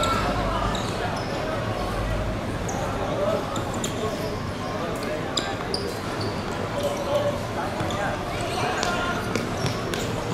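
Players' voices and calls on an outdoor football court, with scattered knocks of the ball being kicked and bouncing on the hard surface.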